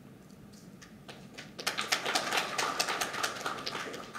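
Light, scattered clapping of a few hands: many quick irregular claps that start about a second in and die away near the end.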